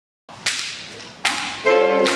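A jazz big band opens a tune with sharp percussive accents about three-quarters of a second apart, each ringing briefly. Near the end the horn section comes in with a held chord.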